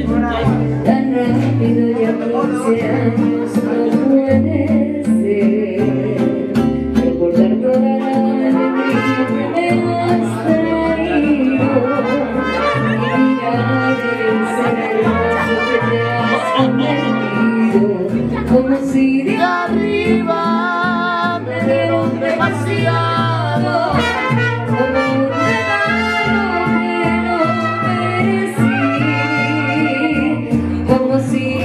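A mariachi band playing with trumpets and singing voices, steady and loud throughout.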